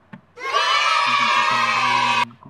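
A group of children cheering together, a sound effect that sets in about half a second in and cuts off abruptly.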